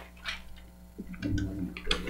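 Large paper plan sheets rustling and crinkling as they are handled, with a brief low murmured voice a little past the middle.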